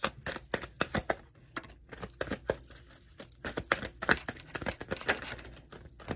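Tarot card deck being shuffled by hand: an irregular run of quick, crisp card clicks and flicks.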